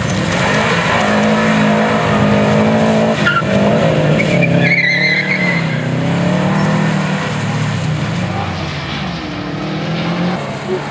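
Subaru Legacy's flat-four engine revving and easing off as the car is driven sideways through cones on a wet skidpan. There is a brief high squeal about halfway through, and the engine winds down near the end as the car comes to a stop.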